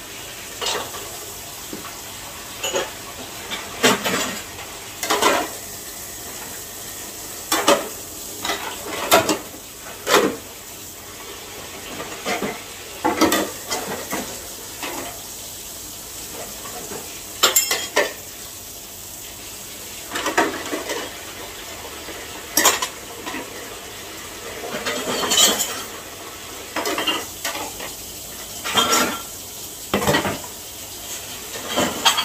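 White ceramic bowls and plates clinking and clattering irregularly against each other as they are washed and stacked in a plastic tub of water. Under them is a steady hiss of tap water running into the tub.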